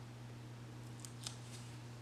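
Faint handling of a small letter sticker, lifted off its sheet and placed with metal tweezers: three or four short, crisp ticks between about one and one and a half seconds in, over a steady low hum.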